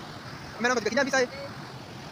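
A fast river and waterfall rushing steadily. A person's voice comes in briefly just over half a second in.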